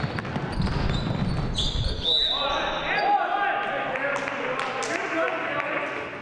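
Basketball being dribbled on a gym floor with sneaker squeaks, then a shrill referee's whistle about a second and a half in stopping play. Men's voices calling out on the court follow, over a low rumble that stops about two seconds in.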